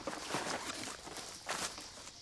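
Footsteps crunching on dry leaf litter and twigs, irregular steps with a louder crunch about a second and a half in.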